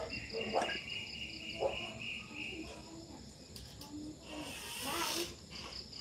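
Night insects, crickets, chirping steadily in a high, finely pulsing trill. A second, lower steady trill runs alongside it and stops about two and a half seconds in.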